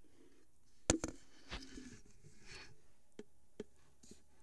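Handling noise on a wooden surface: a sharp knock about a second in, then a second strike and some rustling and scraping, and two light taps near the end.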